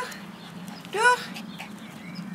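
A young small dog giving two short, rising yips, one right at the start and one about a second in.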